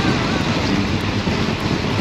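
Steady rush of wind buffeting the microphone of a camera moving at speed behind a track cyclist on a velodrome, with a low rumble underneath.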